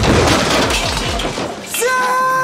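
A loud crash of breaking glass and clattering in a fight. Near the end a man's long, held shout begins.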